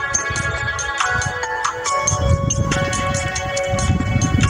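Background music with a quick, steady beat and held tones, over a low rumble that comes up from about halfway.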